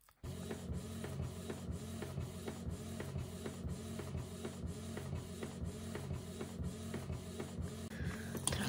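Canon inkjet printer printing a page: a steady mechanical hum with regular clicks about three times a second, starting abruptly.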